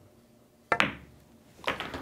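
Pool cue tip striking the cue ball, followed almost at once by the sharp click of the cue ball hitting the nine ball. About a second later the nine ball drops into a pocket with a short cluster of knocks.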